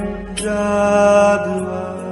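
Devotional Hindu chant sung over music, the voice holding long notes.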